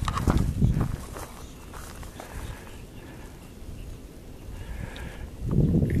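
A few footfalls on a dirt trail in the first second, then quiet outdoor ambience.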